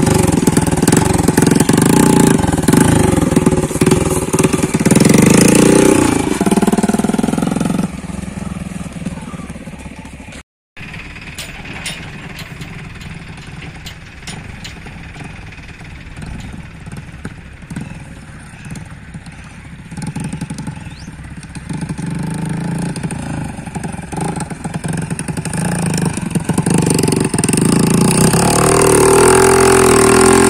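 A Bajaj CT 100's single-cylinder four-stroke engine, fitted with tall twin straight-pipe exhausts, revving up and down close by. The sound turns faint about eight seconds in as the bike rides off, cuts out briefly around ten seconds, then builds again with more revving as it comes back near the end.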